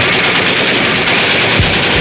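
Sound effect from a TV news programme's opening vignette: a loud, dense rattling noise with a short low downward swoop near the end.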